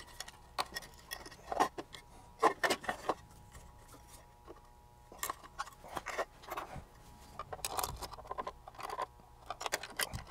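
Small metal parts and hand tools clinking and clicking irregularly in a plastic parts tray while an instrument plug-in is taken apart, with the sharpest clinks between about one and three seconds in.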